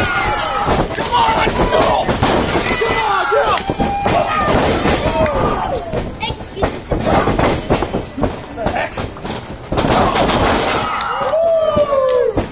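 Wrestlers' bodies and feet landing on a wrestling ring's canvas, giving repeated thuds and slams, under shouting and yelling voices.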